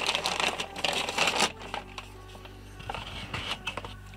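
A plastic bag crinkling for about the first second and a half, then soft background music with a few light handling clicks as a pistol is fitted into a leather paddle holster.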